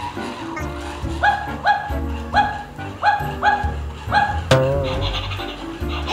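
About six short barks in quick, uneven succession over cheerful background music.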